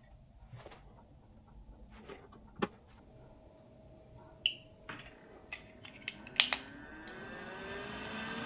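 Faint handling clicks, then a short electronic beep from the Sovol SH03 filament dryer's touch panel and two sharp clicks. The dryer's fan then starts and spins up with a rising whine, running steadily near the end as drying begins at 85 °C.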